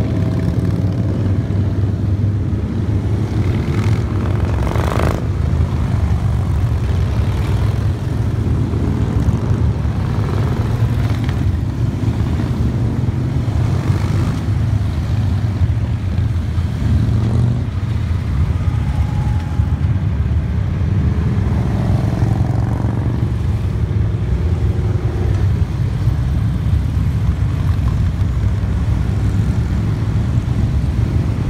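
A long line of motorcycles riding past one after another, their engines running together in a continuous deep rumble.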